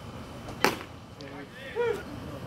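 A single sharp crack of the baseball arriving at home plate on a pitch. About a second later comes a short shout that rises and falls in pitch.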